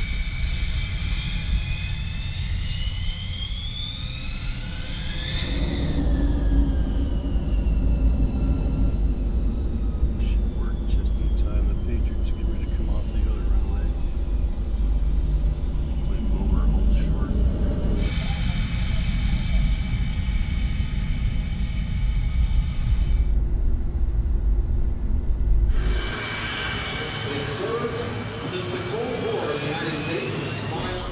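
Jet engine of a Lockheed U-2 whining and rising steadily in pitch as it spools up, then a heavy, steady low rumble of the jet running on the runway, with steady engine tones, as it is followed by the chase car.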